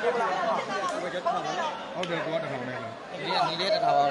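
Crowd of spectators chattering, many voices overlapping, with one man's voice rising above the chatter near the end.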